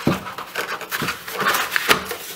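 A corrugated cardboard mailer scraping and rustling as it is pressed down into a box-folding fixture, with a few sharp knocks of board against the fixture, the last one near the end.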